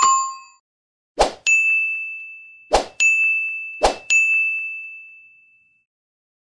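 Sound effects of an animated subscribe end-screen: a chime ding fading at the start, then three short thumps, each followed by a bright bell-like ding that rings out, the last ringing longest.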